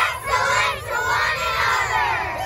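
A group of children shouting a cheer together, many voices overlapping in one long yell.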